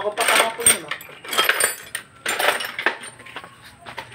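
Metal tools and engine parts clinking and scraping in short bursts, about one a second.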